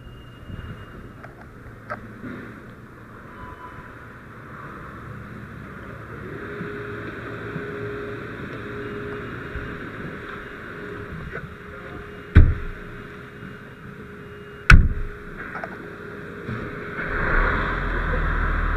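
Fire apparatus running in the station bay while the crew boards the cab, a steady mechanical noise with a steady tone joining about six seconds in. Two loud bangs, about twelve and fifteen seconds in, of cab doors being shut. The low engine noise grows louder near the end.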